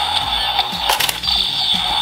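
DX Zero-One Driver toy belt playing its electronic standby music, with a sharp plastic click about a second in as the Progrise Key is seated and the driver's front cover springs open.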